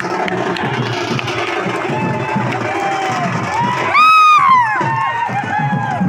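Large crowd cheering and shouting. About four seconds in, a loud high-pitched cry rises above the din and falls in pitch, followed by shorter high cries.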